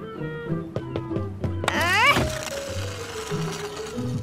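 Cartoon background music throughout, with a short vocal exclamation just before halfway. Then comes a sliding sound effect with a slowly falling tone, lasting about two seconds, for a shuffleboard puck gliding across the court.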